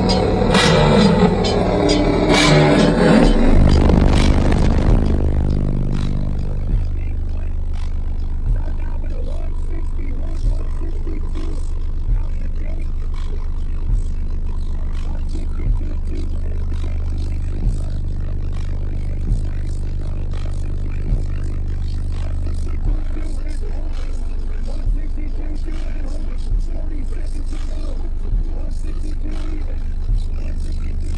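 Competition truck's subwoofer system playing a bass music track at about 162 dB during a record run: full-range music for the first few seconds, then a deep steady bass note with a thump about every two seconds.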